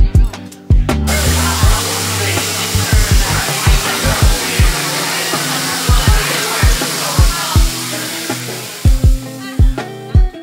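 Pork belly slices sizzling on a tabletop gas grill: a steady, dense hiss that starts abruptly about a second in and stops just before the end, under background music with a steady beat.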